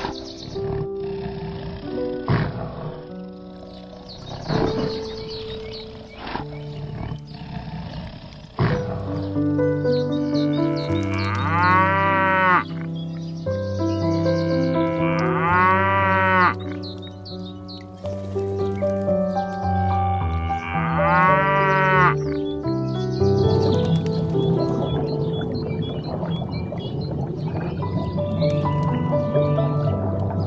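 Background music runs throughout. Over it a cow moos three times in the middle part, each call rising and falling in pitch.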